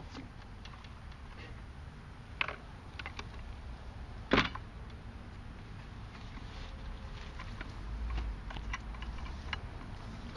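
Gear being packed into a folding shopping cart: scattered light clicks and rattles, with two sharp clacks about two and a half and four and a half seconds in.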